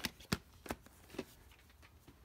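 A VHS cassette and its case being handled: four short sharp plastic clicks and knocks in the first second or so, then stillness.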